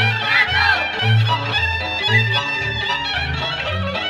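Romanian folk dance music: a quick, ornamented melody over a bass that alternates between two low notes about twice a second.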